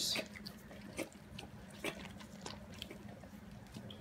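A dog licking food off a person's fingers: faint, scattered wet licks and smacking clicks.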